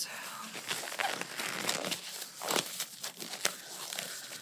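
Oversized blue disposable gloves being pulled onto the hands and stretched, the thin rubbery material rubbing and snapping close to the microphone: irregular rustling with scattered sharp snaps.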